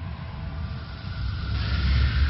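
A deep rumbling sound effect, with a rushing noise that swells louder about one and a half seconds in, like a cinematic whoosh.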